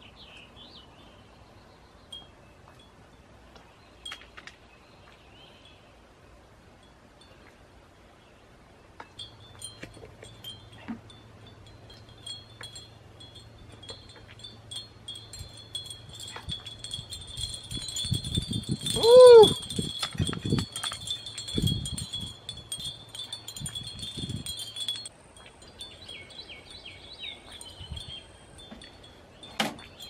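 Wind chimes ringing steadily for most of the middle of the stretch. A short, loud vocal sound comes about two-thirds through, with a few light knocks around it. There are faint bird chirps near the start and near the end.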